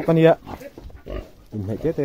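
A domestic pig grunting and snuffling at its feed trough, mixed in with a man talking.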